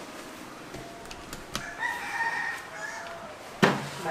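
A rooster crowing once, with a few light clicks before the crow and a single sharp knock near the end.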